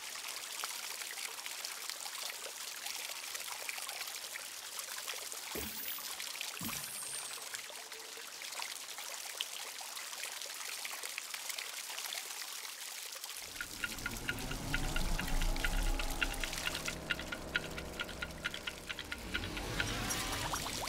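Water fizzing and bubbling steadily, with fine crackling, as gas bubbles rise through the water columns of a small solar-powered electrolyser making hydrogen and oxygen. About two-thirds of the way in, a deeper, fuller sound joins underneath.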